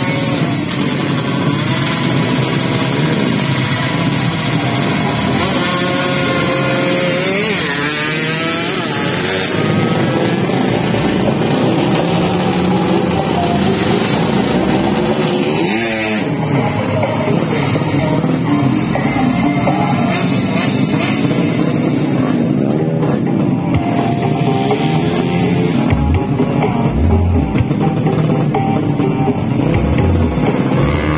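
Drag racing motorcycles revving at the start line, with engine pitch rising and falling in sweeps. About halfway through, a bike runs past, its pitch dropping sharply as it goes by. Music plays underneath throughout.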